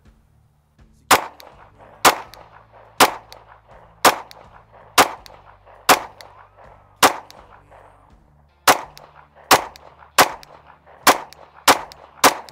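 Shadow Systems MR920 9mm pistol fired in single shots: seven about a second apart, then after a short pause five quicker shots roughly three-quarters of a second apart, each shot trailing off in a short echo.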